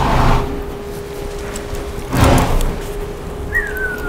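Two short breathy rushes about two seconds apart, a horse blowing out through its nostrils during a massage, over a steady faint hum. A brief falling whistled note near the end.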